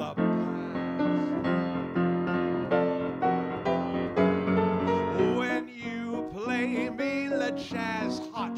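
Piano playing chords in a jazz song, with a man's singing voice coming back in about five seconds in.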